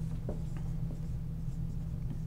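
Dry-erase marker being written across a whiteboard, a few short strokes as a word is written, over a steady low hum.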